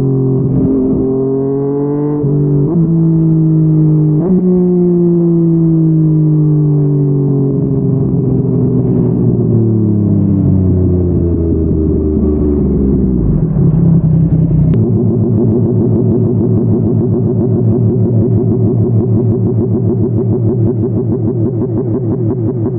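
Yamaha MT-09's three-cylinder engine through a Yoshimura R55 slip-on exhaust, heard from the saddle on the move. The engine pitch steps with two gear changes in the first few seconds, then falls steadily as the bike slows. After a sharp click about two-thirds through, it settles into an even, fast-pulsing low-rpm burble.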